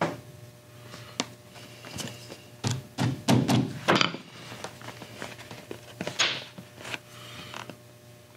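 Small hammer tapping clinching nails through the leather of a purse gusset: a single knock at the start and another about a second in, then a quick run of sharp taps around three to four seconds in. Leather handling and rustling come between the strikes.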